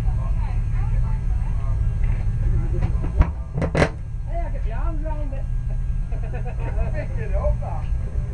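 Indistinct voices of people talking nearby over a steady low rumble. A little after three seconds there are two sharp knocks as fabric brushes against the camera.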